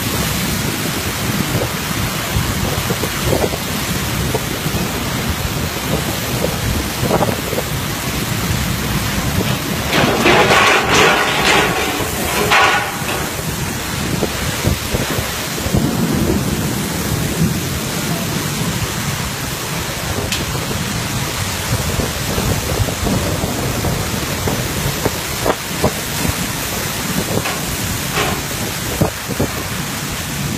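Typhoon wind and driving rain: a dense, steady rush of noise with the wind buffeting the microphone. It swells into a louder burst for a few seconds about ten seconds in.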